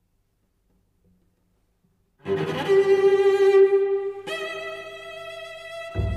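Silence, then about two seconds in a cello enters with a loud, sustained bowed note high in its range, and a couple of seconds later it moves up to a higher held note.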